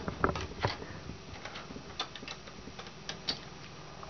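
Light clicks and taps of a MacBook Pro's aluminum access cover being fitted and pressed into place by hand, with a few sharper clicks in the first second and small scattered ticks after.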